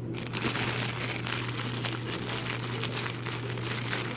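Clear plastic packaging crinkling loudly as it is handled close to the microphone: a dense run of crackles that starts just after the beginning.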